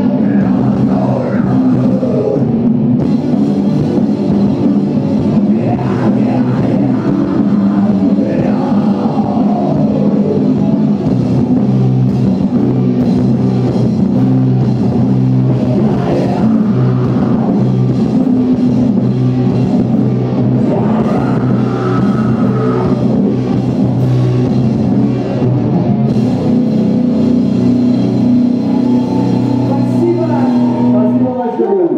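Live rock band playing loud and steady: electric guitars and a drum kit, with a singer's vocals.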